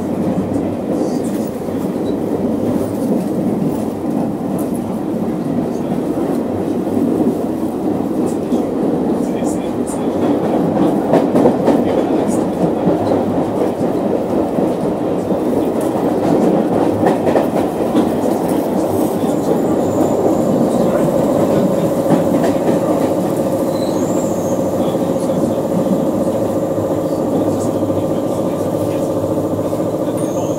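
Inside a London Underground Circle Line carriage on the move: the steady rumble and rattle of the train running on the track. About two-thirds of the way in, a steady whine joins the rumble and holds to the end.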